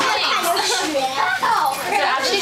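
Several young children talking over one another: steady, overlapping children's chatter.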